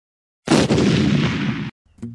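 A loud sound effect over a logo intro card: one noisy burst starting about half a second in, lasting just over a second, then cutting off abruptly.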